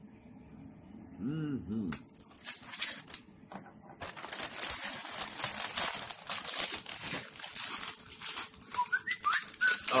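Plastic cookie package crinkling as it is handled and turned over, in scattered crackles at first and then continuous crinkling from about four seconds in.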